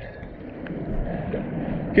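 Steady rushing noise of river water moving around a camera held at the surface, mixed with wind on the microphone.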